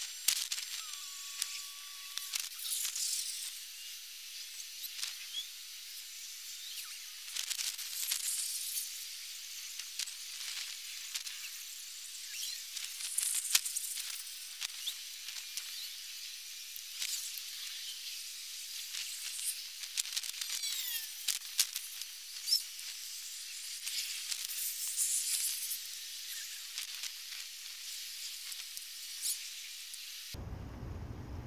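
Soap foam in buckets fizzing and crackling softly as its bubbles burst and the foam slowly collapses: a faint, steady high hiss dotted with many tiny pops.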